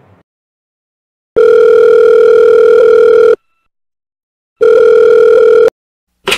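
Telephone ringing tone heard down the line as a call is placed: a steady electronic beep about two seconds long, then after a pause a second beep that cuts off short.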